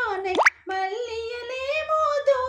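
A woman singing unaccompanied, with long held, bending notes. About half a second in, a short pop that sweeps sharply up in pitch cuts in, followed by a brief break before the singing carries on.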